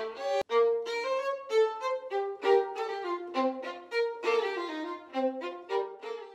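Solo violin playing a quick run of separate bowed notes, with a brief gap about half a second in.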